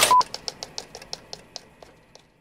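Logo sting sound effect: a short beep, then a run of ticking clicks that slow down and fade away.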